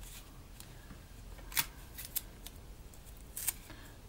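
Small handling sounds as copper wire and sticky tape are worked around a cardboard tube: a few short, crisp clicks and crinkles, the loudest about one and a half seconds in, with others around two and three and a half seconds.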